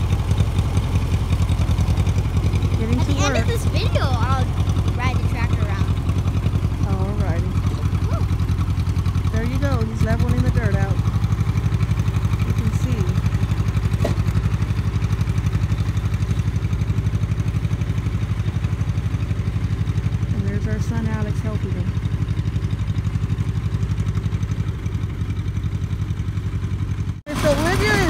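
Old red farm tractor's engine running steadily with an even low hum as it drags a rear blade to level dirt.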